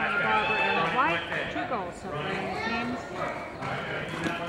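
Indistinct voices of people talking and calling close to the microphone, over the hoofbeats of polo ponies moving on the arena dirt.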